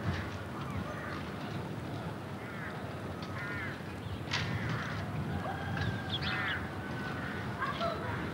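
Birds calling in short, repeated calls, several in a row through the middle and latter part, over a steady low background noise.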